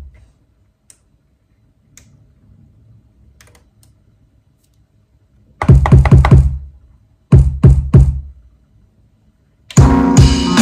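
Deep kick drum samples triggered by finger taps on an Akai MPC One's pads: a quick run of about five hits around six seconds in, then about four more a second later, with faint pad and button clicks in the quiet before. Just before the end a drum beat with pitched notes starts playing back.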